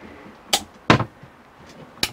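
Two sharp clacks, about a third of a second apart, from an overhead storage cabinet being handled: its door and latch knocking shut.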